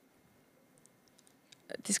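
Near silence with a few faint, small clicks. A woman's voice comes back in near the end.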